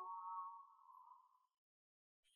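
Faint sustained high tones of a soft background score, drifting slightly upward and fading out about one and a half seconds in.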